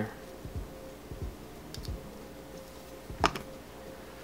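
Small clicks and taps from a Raspberry Pi Zero being handled as a micro SD card is pushed into its slot. There are a few faint ticks, then one sharper click a little over three seconds in.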